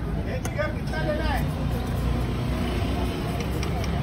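Steady low rumble of street traffic, with a voice speaking briefly from about half a second to a second and a half in.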